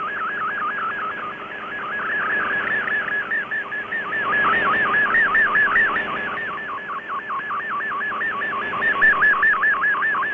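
Shortwave Radiogram MFSK digital picture transmission received on a shortwave receiver: a warbling tone that rises and falls several times a second, over steady static hiss. It is the sound of a colour image being sent.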